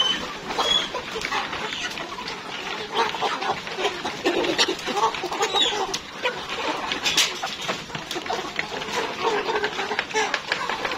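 A flock of three-month-old Rainbow Rooster chickens clucking and giving short high chirps while they feed, with many sharp clicks of beaks pecking in a wooden feed trough.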